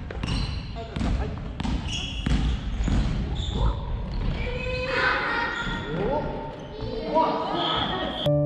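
Badminton rally: rackets repeatedly hitting the shuttle, sharp taps about every two-thirds of a second through the first few seconds, echoing in a gym hall. Players' voices call out over the later part.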